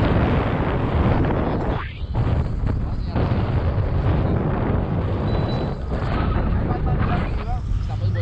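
Airflow buffeting a camera microphone on a pole during a tandem paraglider flight: a loud, rough, steady wind rush, briefly easing about two seconds in and again about three seconds in.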